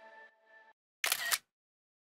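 The last notes of a short musical jingle fade out, then about a second in a camera shutter sound effect plays, a quick double click, marking the app snapping a photo of the problem.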